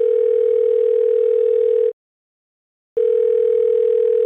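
A steady telephone-line tone, heard through a phone's narrow band. It sounds for about two seconds, stops for about a second, then comes back for another two.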